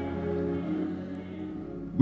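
Soft instrumental music of long, held chords, playing steadily under a pause in the preaching.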